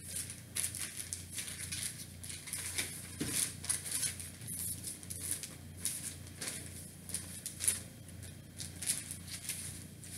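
Pages of a paper textbook being turned and rustled: an irregular run of short, crisp papery swishes.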